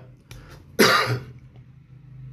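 A man coughs once to clear his throat, a short loud burst about a second in, preceded by a smaller one.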